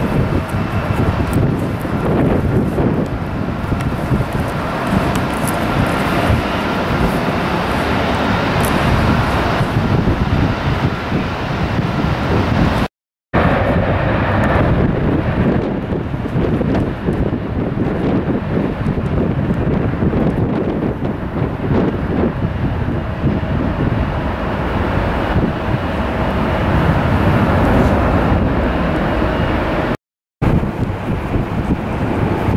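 Jet airliner engines running, a steady roar with a faint high whine, mixed with wind buffeting the microphone. The sound drops out for a moment about 13 seconds in.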